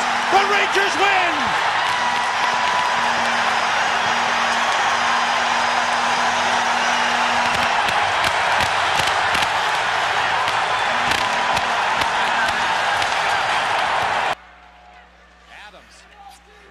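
Arena crowd cheering loudly after a game-winning overtime goal, a steady roar that cuts off suddenly about 14 seconds in.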